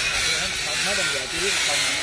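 Faint, low voices talking under a steady hiss.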